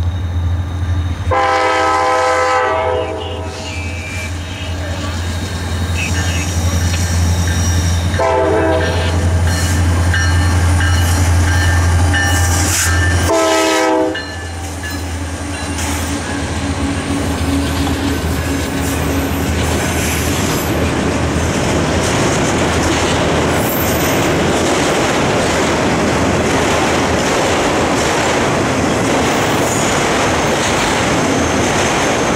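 Norfolk Southern freight train approaching with the diesel locomotive's engine droning, sounding its air horn in three blasts, the last one dropping in pitch as the locomotive goes by about halfway through. A long string of autorack cars follows, rolling past with steady wheel and rail noise.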